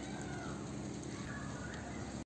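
A cat meowing twice, each meow drawn out and falling in pitch, over a steady low background hum.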